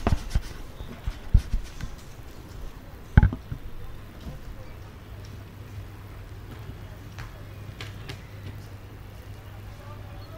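Handling noise on a commentary-box microphone as the commentators change over: a few dull knocks and bumps in the first few seconds, the loudest about three seconds in. After that only a steady low hum is left.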